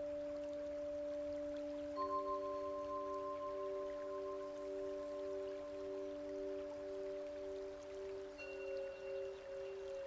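Soft, calm background music of long, held, bell-like ringing tones. A new note enters about two seconds in with a slow, wavering pulse, and another joins near the end.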